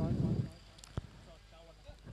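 A man's commentary voice trails off, followed by a quiet pause with faint background noise. A single sharp click comes about a second in.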